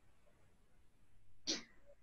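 Near silence, then about a second and a half in one brief, sharp burst of a person's breath.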